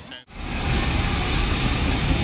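Busy city street traffic with a bus engine running close by: a steady rumbling din that starts after a momentary drop near the start.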